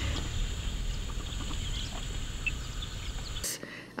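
Outdoor field ambience: a steady low rumble with a few faint, scattered bird chirps. A click about three and a half seconds in, after which the rumble drops away.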